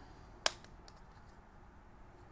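Plastic back cover of a Ford Fiesta remote key snapping onto its case: one sharp click about half a second in, then a few faint ticks as the shell is pressed together.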